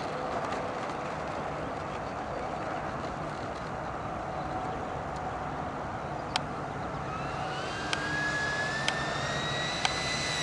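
Electric ducted fan of a HABU 32 RC jet (Tamjets TJ80SE fan on a Neu 1509 motor) spooling up: a whine that rises in pitch from about seven seconds in and then holds steady, over a steady rushing noise. A few sharp clicks sound near the end.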